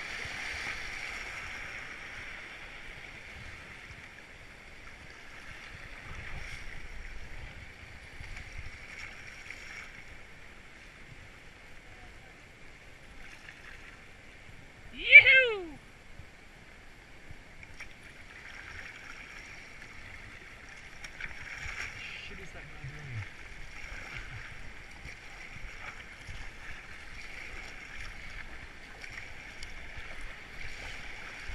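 Whitewater of a river rapid rushing and hissing around a kayak. About halfway through, a person's short, loud yell drops steeply in pitch.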